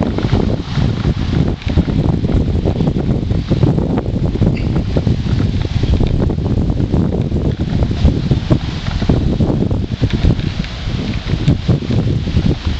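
Wind buffeting the microphone: a loud, steady, gusty rumble with rapid low flutter.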